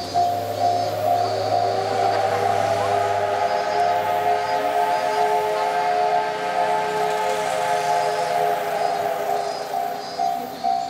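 A long, steady steam locomotive whistle sounds as a chord of several tones and fades near the end. It comes from the C57 of the approaching SL Yamaguchi and drowns out the level-crossing warning bell, which rings in a quick repeating pulse before and after it.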